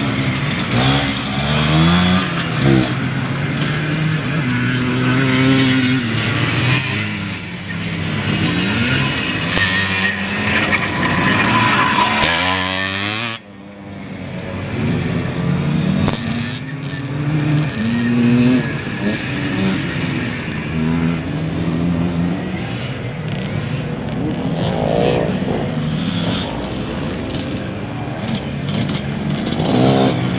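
Classic off-road enduro motorcycles ridden through a ploughed-field section, their engines revving up and down with the throttle, sometimes more than one at once. The sound breaks off abruptly about 13 seconds in and then carries on.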